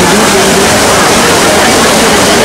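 Steady rush of the Trevi Fountain's water cascading over its rocks into the basin.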